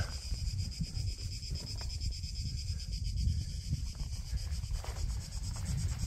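A low, uneven rumble of wind and handling noise on the microphone, under a steady, high-pitched chirring of insects.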